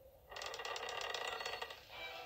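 Rapid mechanical ticking and rattling from the film's soundtrack as the hourglass is shown, starting suddenly about a third of a second in and dying away after about a second and a half.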